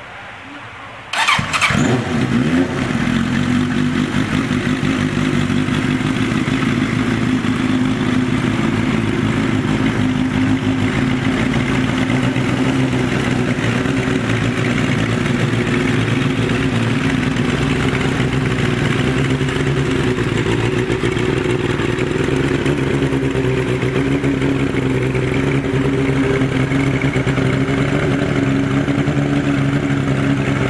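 The 1986 Suzuki GSX-R750R Suzuka 8 Hours racer's inline-four engine starts suddenly about a second in and then runs steadily.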